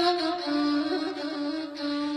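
Solo ney, the Persian end-blown reed flute, playing a slow melody of long held notes with a breathy tone. It steps down to a lower note about half a second in.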